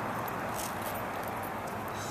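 Steady, even outdoor background noise with a few faint, short clicks.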